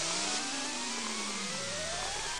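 Cartoon sound effect of a heated flask of chemicals fizzing and hissing, with several whistling tones gliding up and down across each other as the mixture builds up to blowing.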